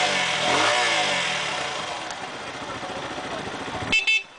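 Kanuni Phantom 180 motorcycle engine running, revved up and back down once in the first second, then running steadily. A click and a short high-pitched beep come right at the end.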